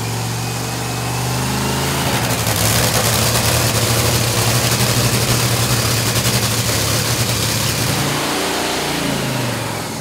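Top Fuel dragster's supercharged nitromethane Hemi V8 running in a pit warm-up: a loud, rough, steady idle that grows a little louder about two seconds in, then drops in pitch and winds down near the end as it is shut off.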